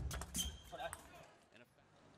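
Table tennis rally: a quick run of sharp clicks from the celluloid-type ball striking paddles and the table in the first second, then quiet as the point ends.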